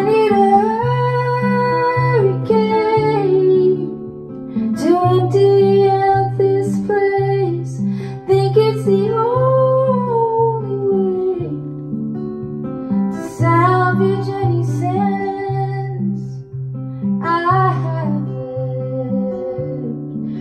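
A woman singing long held notes in phrases over her own strummed acoustic guitar, played live.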